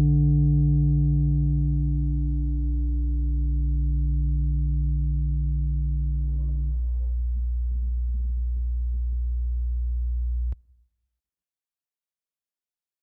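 Steady humming tone with a stack of overtones over a low drone. The main tone drops out about two-thirds of the way through, leaving the drone, and then all sound cuts off abruptly shortly before the end.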